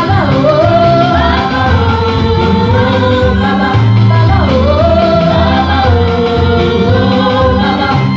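A group of worship singers on microphones singing a gospel praise song together over band accompaniment with a moving bass line. The lead melody repeats a swooping phrase that dips and climbs back, about every four seconds.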